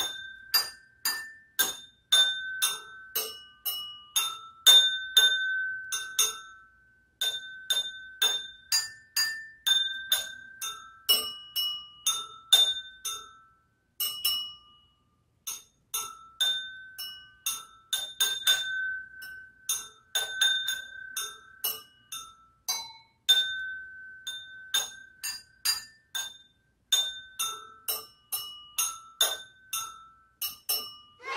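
A metal spoon tapping a row of stemmed wine glasses partly filled with water, about two or three strikes a second, each ringing a short clear note. The notes jump between several pitches as the glasses are tried one after another to test their tuning by ear, with brief pauses twice.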